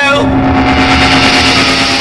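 Loud, distorted punk rock music between sung lines: one chord is held steadily, with no singing.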